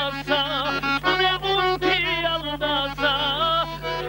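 A man singing an Avar folk song unaccompanied, in short held notes with a strong wavering vibrato, over a steady low hum.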